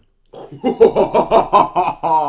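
A man laughing loudly and heartily, a quick run of ha-ha bursts about seven a second, starting about a third of a second in.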